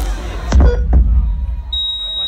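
Concert PA system firing two deep booms about half a second apart over crowd noise. A steady high-pitched electronic tone starts near the end.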